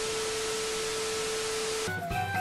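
TV static sound effect over a colour-bars test pattern: a steady hiss with one steady mid-pitched test tone over it, cutting off suddenly near the end.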